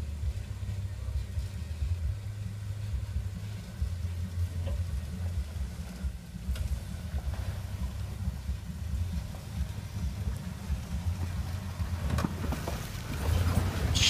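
A 1979 International Harvester Scout's engine runs with a low, uneven rumble as the truck creeps along a rough dirt track. The sound grows louder and noisier near the end as the truck draws close.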